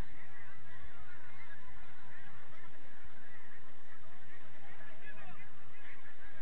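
A dense babble of many short overlapping calls, sliding up and down in pitch, over a low rumble.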